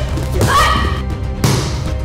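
Background music with a short shouted voice, then a single thump of a palm strike landing on a freestanding body-opponent training dummy about one and a half seconds in.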